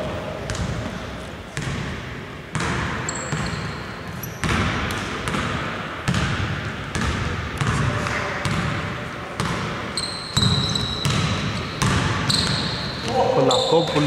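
Basketball bouncing on a hardwood court, roughly once a second, with the echo of a large hall. Sneakers squeak briefly on the floor a few times.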